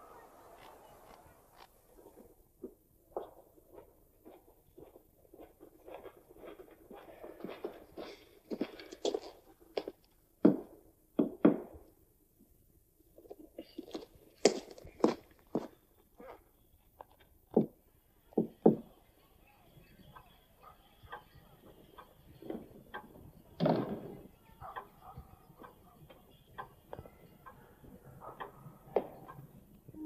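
Film sound effects: irregular footsteps and thuds, with a few loud, sharp knocks on a wooden room door in the middle.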